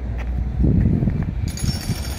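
Outdoor street ambience: a low, uneven rumble with nothing distinct standing out.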